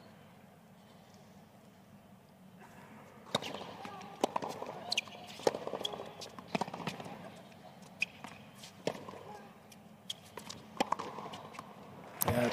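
Tennis rally on a hard court: sharp racket-on-ball strikes and ball bounces, starting about three seconds in and following every half second to a second until near the end.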